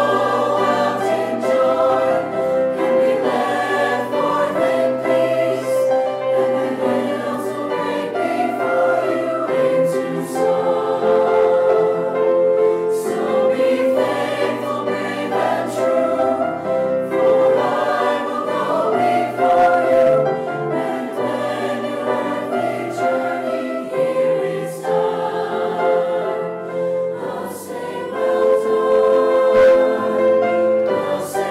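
Mixed choir of men's and women's voices singing in parts, moving through long held chords at a fairly even volume.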